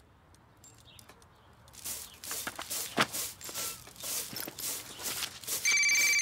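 Scattered soft knocks and rustles of handling and movement, then near the end a telephone starts ringing, a steady high-pitched ring.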